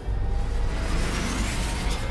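Animated sound effect of a VTOL aircraft's engines arriving: a sudden loud rush of jet noise with deep rumble and a whine climbing in pitch in the second half, mixed with the show's dramatic music.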